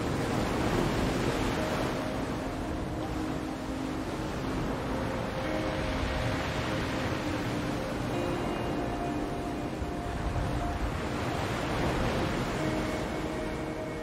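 Ocean waves washing in, the surf swelling and easing every few seconds, mixed with soft ambient music of long held notes.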